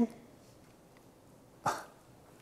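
A single short cough about one and a half seconds into a quiet pause, just after the tail of a man's speech.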